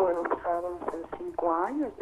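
Speech only: a woman caller talking over a telephone line.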